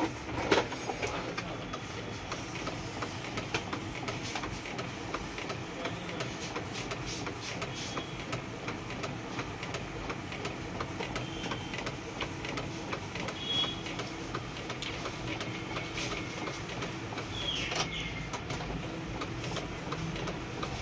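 Epson L8050 inkjet printer printing a photo: the print head carriage shuttles back and forth over the paper with a steady motor hum and many small clicks. Brief high whines come from the printer's motors, with a short rising whine near the end.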